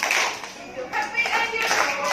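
A group of young children and their teacher clapping their hands, mixed with voices.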